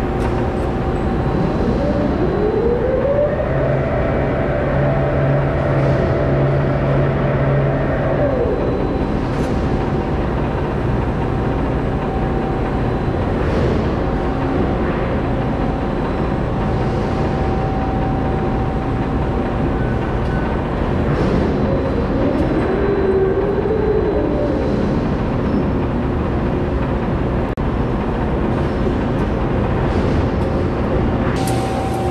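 Electric overhead crane lifting steel plates: its drive whines up in pitch about two seconds in, holds for several seconds and winds down, then whines again more briefly past the twenty-second mark, over a steady machinery hum.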